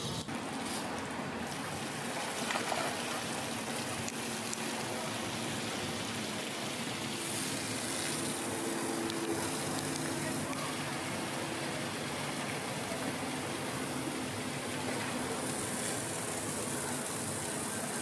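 Steady rush of running water, with faint voices murmuring underneath.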